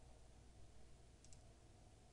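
Near silence: faint room hum, with a faint double click of a computer mouse a little past halfway.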